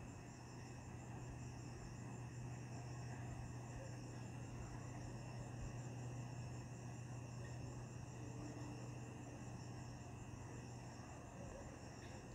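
Faint, steady chirring of insects, with a low steady hum beneath it.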